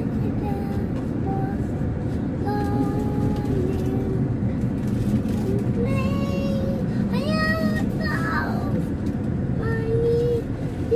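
A young child singing a song in long held and gliding notes, over the steady low rumble of the car's cabin as it drives.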